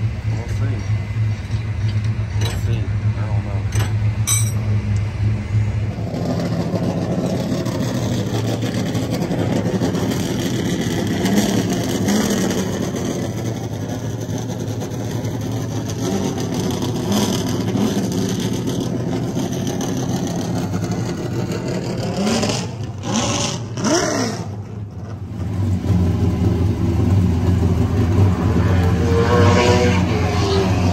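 Race car engines running: a steady low engine drone that shifts in pitch about six seconds in, with one rise and fall in pitch a little past twenty seconds.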